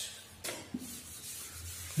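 Chalkboard duster rubbing chalk off a chalkboard: faint, irregular wiping strokes.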